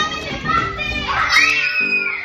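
Several children shouting together, then one high child's scream that rises and falls in the second half, over background music.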